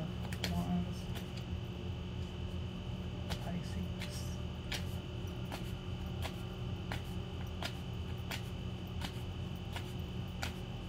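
Tarot cards being shuffled by hand: soft, irregular card snaps and slaps about once or twice a second over a steady low hum.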